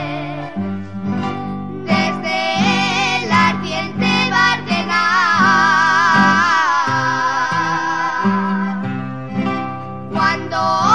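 A Navarrese jota sung with strong vibrato and long held notes, accompanied by guitars and an accordion.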